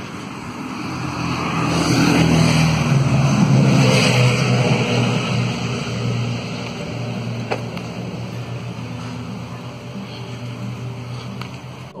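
A motor vehicle passing close by: its engine and tyre noise swell over the first few seconds, then slowly fade away.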